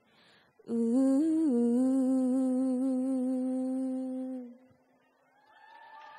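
A woman's solo singing voice takes a breath and then holds one long final note for about four seconds, with a brief upward turn just after it begins, before fading out. Faint voices rise near the end.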